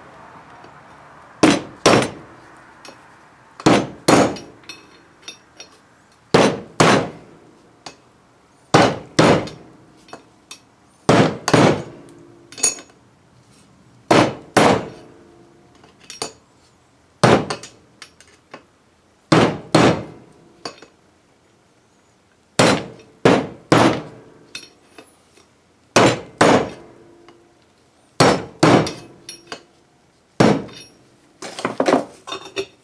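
Hammer blows driving a new wheel-bearing race into a 1985 Chevy K10 front hub. Sharp metallic taps come in pairs and threes every two to three seconds, a few with a short ring, as the race is worked in gently until it seats.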